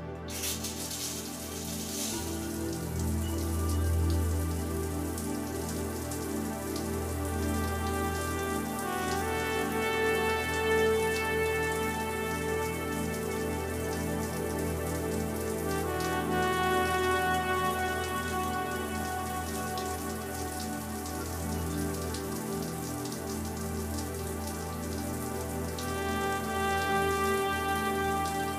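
A shower running: water spraying steadily from the shower head, the spray coming on suddenly at the very start. Slow music with long held notes plays underneath.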